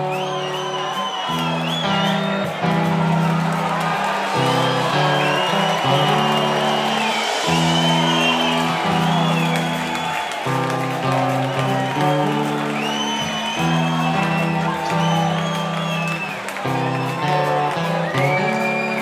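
Rock band playing an instrumental intro live on stage, electric guitars over a low line that moves from note to note, with bending high notes throughout.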